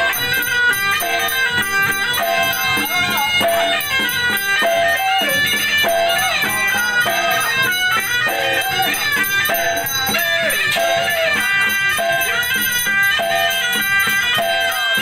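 Chinese suona (double-reed shawm) playing a nasal, gliding ritual melody, accompanied by a hand drum and other percussion beating throughout.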